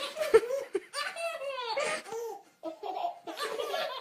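Baby laughing in repeated short belly-laugh bursts, with a brief knock about a third of a second in.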